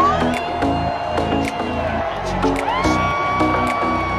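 Loud music with a steady beat, mixed with a large crowd cheering and whooping.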